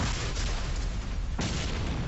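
Sound effects of a TV programme's logo ident: a deep boom-like hit with a rushing noise at the start, and a second hit about a second and a half in, under the ident's music.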